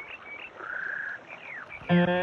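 Birds chirping: a few short whistled chirps and curving sweeps, with a trill lasting about half a second, over a faint hiss. Just before the end, loud plucked guitar notes come in.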